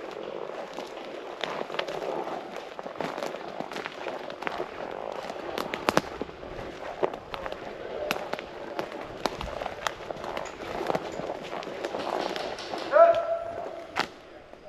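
Footsteps crunching over a conifer forest floor of needles and dead twigs, with twigs snapping in sharp cracks and the rustle of clothing and gear as people walk.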